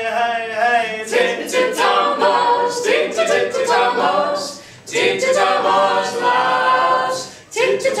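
Small mixed a cappella group, two women and two men, singing a Welsh folk song together in harmony, with short breaks between phrases about five and seven and a half seconds in.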